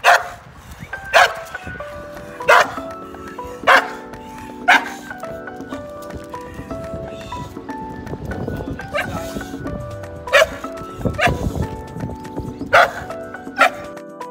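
A boxer dog barking over background music: single short barks about once a second for the first five seconds, then a pause, then four or five more near the end.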